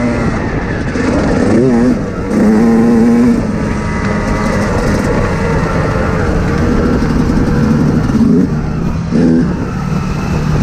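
Off-road vehicle engine running on a rough trail, its revs rising and falling with the throttle, with short dips in level about two seconds in and near the end.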